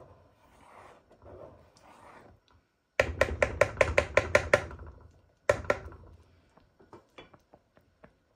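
Wooden spatula knocking and scraping against a non-stick pan of thick carrot kheer: a quick run of about a dozen sharp clicks near the middle, a couple more shortly after, then a few scattered taps.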